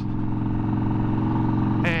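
A 1991 Harley-Davidson FXR's 1340 Evolution V-twin runs at a steady pitch as the bike is ridden.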